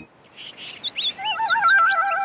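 Cartoon jungle ambience of birds calling. Quick rising and falling chirps start about half a second in, and a steady warbling trill joins a little after a second in.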